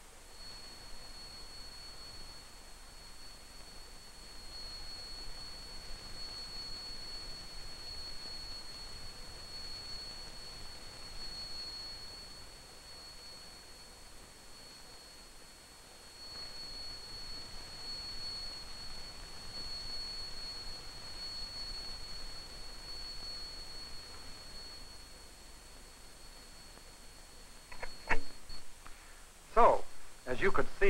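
A steady high-pitched test tone from an oscillator-driven loudspeaker feeding an exponential horn, heard through a microphone. It grows louder and softer as the microphone is moved through the horn's sound beam, dips in the middle, and stops shortly before the end.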